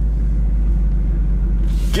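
Dodge Charger Hellcat's supercharged 6.2-litre V8 running at low speed, a steady deep rumble heard from inside the cabin.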